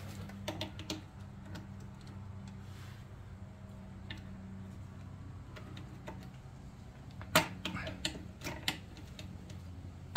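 Needle-nose pliers clicking and ticking against the short cotter pin and metal of a bicycle disc brake caliper as the pin is worked loose, with a few sharp clicks early on and a cluster of louder clicks in the last few seconds. A low steady hum runs under the first half.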